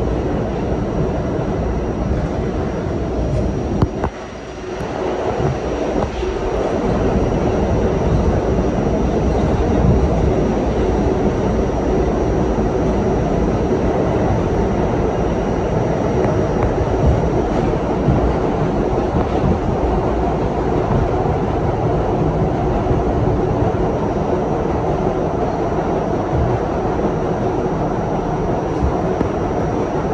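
R68-series subway train running at speed through a tunnel: a steady rumble of wheels on rail and traction motors. A sharp click comes about four seconds in, then the rumble dips briefly and builds back up over the next few seconds.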